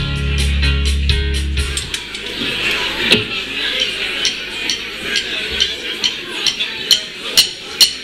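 A live rock band's sustained chord, heavy in the bass, rings and stops about two seconds in, leaving bar crowd noise. Then sharp, evenly spaced drum ticks start up and quicken to about three a second, beginning the next song.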